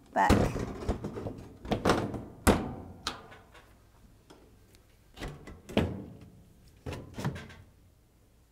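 Oven top panel being lowered and settled onto the cooker body: a string of clunks and knocks as it is shuffled into place, sharpest about two and a half seconds in, with softer knocks later as it is pressed down.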